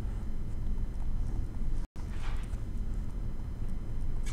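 Stylus tapping and scratching on a tablet screen while writing by hand, over a steady low rumble. The sound cuts out briefly a little before the two-second mark, and a short scratch follows.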